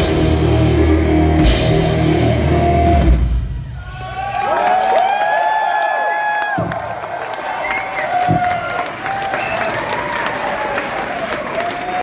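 Rock band playing loud with drum kit and electric guitars, stopping abruptly about three seconds in. After that the crowd cheers and claps, with shouts and whistles.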